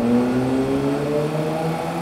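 A car engine accelerating, its pitch rising slowly and steadily.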